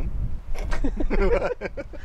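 Two men laughing heartily, a burst of breathy laughs in the middle of the moment over a low steady rumble.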